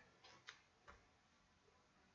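Near silence: room tone with three faint, short ticks in the first second.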